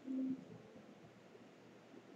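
A short, faint hum-like sound from a person's voice, a single steady low note lasting about a third of a second at the start, then faint room noise.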